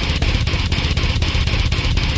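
Heavy metal backing track with no vocals: low, distorted guitars over drum hits at a steady pace of about six a second.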